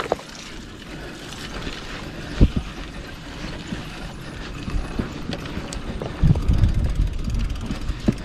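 Bicycle rolling over a bumpy, rutted dirt track: tyres and frame rattling, with wind buffeting the microphone. A sharp knock comes about two and a half seconds in, and a louder low rumble a little after six seconds.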